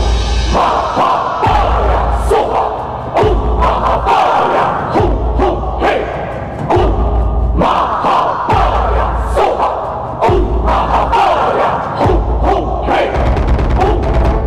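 Many voices chanting a Buddhist mantra in unison over a slow, steady beat of a deep drum.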